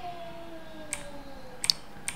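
Two short, sharp computer clicks, about a second in and again near the end, as the on-screen document is changed. Behind them a faint tone slowly falls in pitch.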